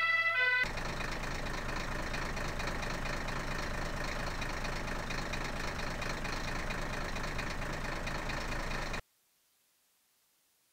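A vehicle engine idling, a steady running noise with a low rumble, that cuts off abruptly near the end. A brief snatch of music is heard at the very start.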